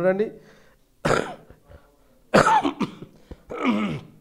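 A man coughing: two short, harsh coughs about a second and a half apart, followed near the end by another throaty sound.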